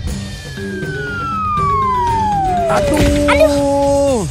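Cartoon falling-whistle sound effect: a pitched whistle gliding steadily down over about three seconds as the characters drop from the sky, then levelling into a steady held tone for the last second. Soft background music plays underneath.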